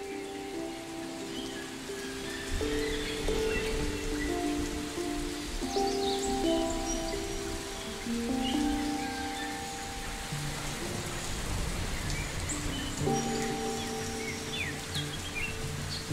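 Ambient electronic meditation music: layered, held synthesizer notes that shift every second or two, with a deep bass coming in a few seconds in. Underneath runs a forest soundscape of birds chirping and a steady, rain-like hiss.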